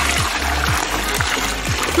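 Water poured in a steady stream from a plastic bucket into a clear plastic storage bin. Background music with a steady beat of about two drum strokes a second plays underneath.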